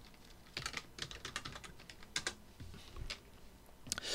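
Computer keyboard typing: a scattered run of soft, sharp key clicks.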